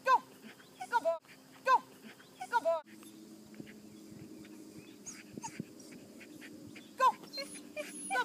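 Small dog giving short, high-pitched yips: about six in the first three seconds, several in quick pairs, then two more near the end.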